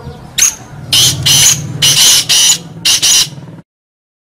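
Black francolin (kala teetar) calling: a run of about eight harsh, scratchy notes, several in quick pairs, cutting off suddenly near the end.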